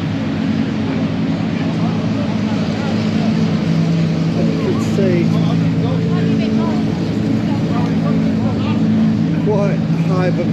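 GT race cars idling in a queue in the pit lane: a steady low engine drone. Voices talk over it, more clearly about halfway through and near the end.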